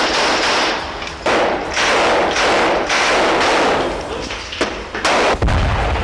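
Loud gunfire in long bursts, typical of automatic rifles, with a heavier, deeper blast about five seconds in.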